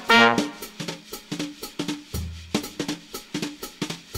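A jazz drum kit plays a break of separate snare and cymbal strokes as a short brass figure dies away at the start. Low bass notes join the drums about halfway through.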